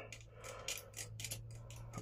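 Faint, irregular metallic clicks and ticks as the steel needles of a punchcard knitting machine are pushed down by hand along the needle bed, where the selected ones latch.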